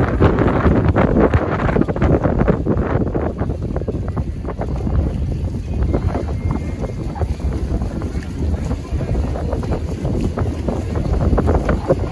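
Wind buffeting the microphone on the open deck of a sailing catamaran, a loud, constant, rough rumble.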